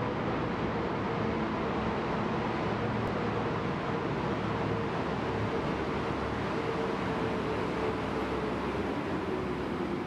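Steady traffic noise inside a road tunnel: a continuous rumble and hiss with a faint steady hum under it.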